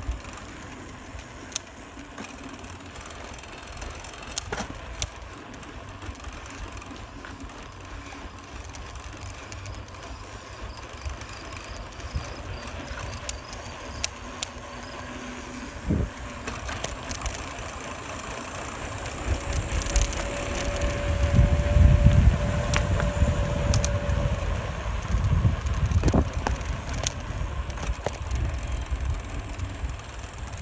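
Riding a 1976 Cobra Pacific 7-speed bicycle on asphalt: a steady rush of tyre and wind noise on the microphone, gustier and louder about two-thirds through, with scattered sharp clicks and rattles from the bike.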